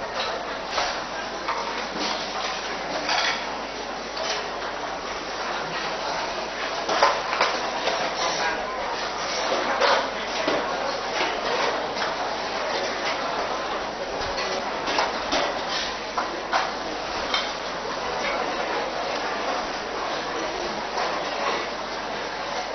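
Dishes, bowls and spoons clinking and knocking again and again, over a steady background murmur of many voices.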